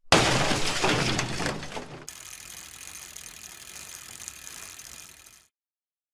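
Channel logo-intro sound effect: a loud noisy burst lasting about two seconds, then a quieter steady hiss with faint high tones that cuts off suddenly about five and a half seconds in.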